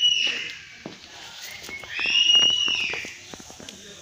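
A bird calling in high whistled notes: a short arched whistle at the very start and a longer, louder arched whistle about two seconds in, with rapid clicks around it.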